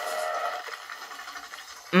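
A cartoon monster's pitched cry from the animation's soundtrack, played through laptop speakers. It is strongest in the first half-second, then gives way to softer, noisier effects.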